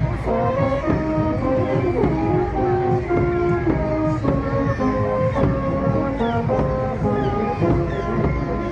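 Brass band playing a tune in the open street, held brass notes over a bass drum keeping a steady beat.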